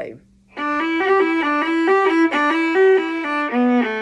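A viola bowed in a quick run of short, separate notes, starting about half a second in and closing on longer held notes near the end.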